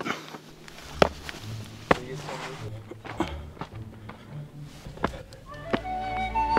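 Shoes and hands scuffing and knocking on rock as someone scrambles up a boulder, a handful of sharp knocks at uneven spacing, with low background music coming in about half a second in.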